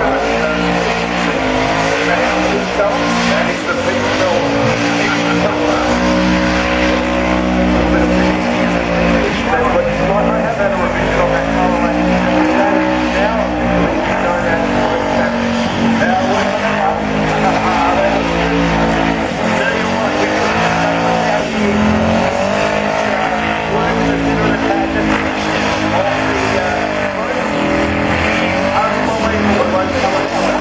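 Burnout car's blown V8 held at high revs, the revs swelling and dropping again every couple of seconds, with the rear tyres spinning and squealing against the track.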